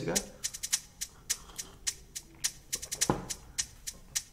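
Drum machine ticking out a light hi-hat pattern, an even run of quick, sharp ticks about five or six a second, with a single low thump about three seconds in.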